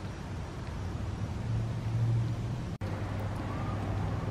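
Outdoor street background with a steady low hum of road traffic, cut off very briefly about three quarters of the way through.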